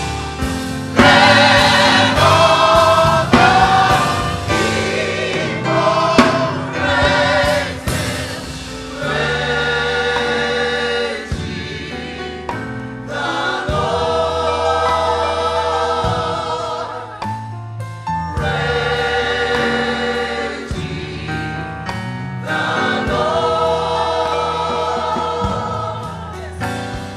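Mixed church choir of men and women singing a gospel song in long held phrases, with brief breaks between them.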